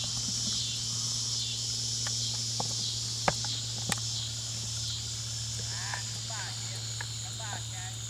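Steady chorus of insects in a rural pasture, a high continuous trill over a low hum, broken by a few sharp knocks about two to four seconds in, the loudest just after three seconds, and a few short chirping calls near the end.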